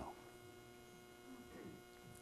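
Near silence: room tone with a faint, steady electrical hum.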